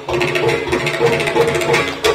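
Carnatic classical music in raga Saramati: melodic accompaniment over a run of quick drum strokes, typical of a mridangam.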